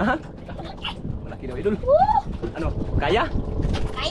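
Voices in short exclamations, with one rising call about two seconds in, over a low rumbling background noise.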